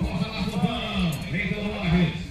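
A man's voice talking without pause.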